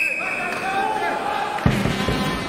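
Referee's whistle blown briefly to restart the wrestlers, then a heavy thud from the wrestlers' grappling near the end, over voices in a large hall.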